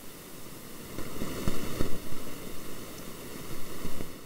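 Steady microphone hiss with rustling handling noise and two soft low thumps about one and a half seconds in.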